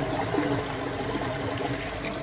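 Pond water pouring steadily from a PVC outlet pipe into a full filter tank.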